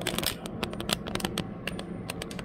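Handling noise from a camera being picked up and moved: a quick, uneven run of clicks and rustling close to the microphone.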